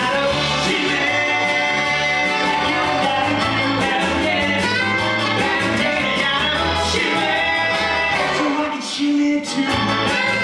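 Live band playing a rock-and-roll number with guitar, with a man singing over it.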